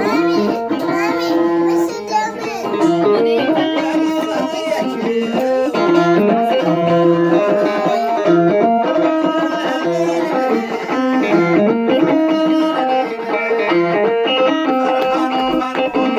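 Ethiopian krar, a plucked bowl lyre, played solo: a running melody of plucked notes, some of them ringing on steadily for about a second.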